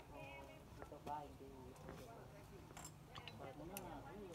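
Faint human speech in the background, with a few light clicks.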